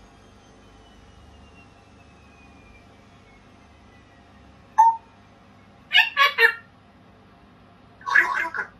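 African grey parrot giving short calls: one sharp squeak about five seconds in, then a quick run of three syllables a second later.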